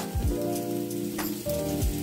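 Chopped onions sizzling as they drop into hot oil in a steel kadhai, with a couple of short taps, under steady background music.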